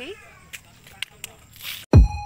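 A brief high rising cry at the start and a few faint clicks, then a whoosh and a loud, deep falling boom near the end: an edited transition hit opening a video intro.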